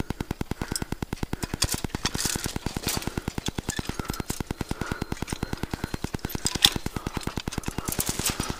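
A steady, even ticking at about ten clicks a second.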